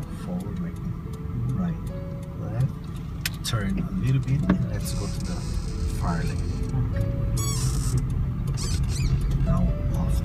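Steady engine and road rumble heard inside the cabin of a moving Nissan car, with music and a faint voice over it.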